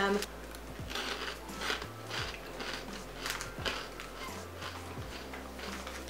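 A person chewing crunchy protein crisps: irregular crisp crunches, several a second at times.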